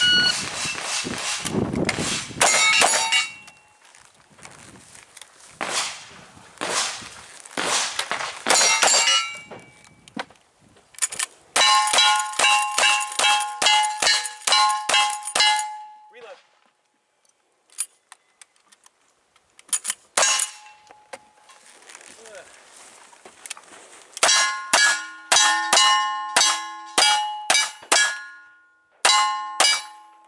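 Gunshots at steel targets, each hit followed by a ringing ding from the steel. A few shots come near the start, then a fast run of about ten shots with ringing steel, a pause, and another fast run of shots with ringing steel near the end.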